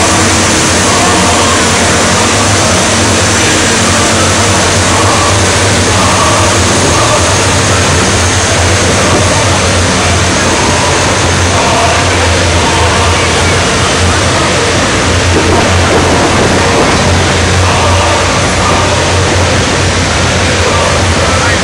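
A column of tanks drives past with engines running loud and steady, a heavy low rumble mixed with crowd noise, with music also heard.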